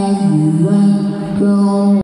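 A man reciting the Quran in melodic tajweed style into a microphone, heard over the hall's loudspeakers. He holds one long ornamented note that dips in pitch and then climbs back.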